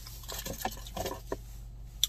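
A few short spritzes from a hand sanitizer spray bottle, with small handling clicks in between.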